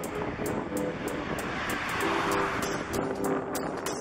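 Background music with a steady beat, laid over the noise of street traffic; a passing car swells up, loudest about two seconds in, then fades.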